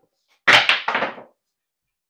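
A pair of craps dice thrown onto the table: a loud sharp clack about half a second in, then a quick rattling clatter of several hits as they bounce and tumble, settling in under a second.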